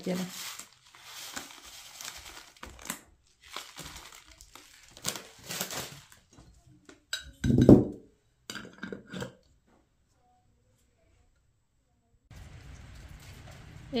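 Foil tea packet crinkling and rustling beside a glass jar of loose black tea, then a dull knock and a few small clicks as the jar's lid goes on. Near the end, after a short silence, steady light rain.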